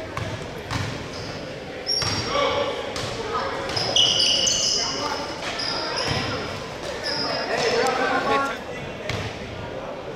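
Basketball bouncing several times on a hardwood gym floor amid spectators' chatter, with short high squeaks now and then, in a large gymnasium.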